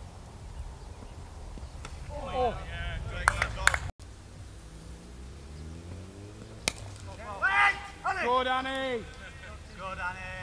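Club cricket on the field: a few sharp clicks about three seconds in, then a single sharp crack of bat on ball near seven seconds, followed by players' distant shouts and calls. A low steady rumble sits underneath throughout.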